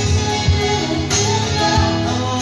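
Live band music: an acoustic guitar played with sung vocals through microphones, over a steady beat.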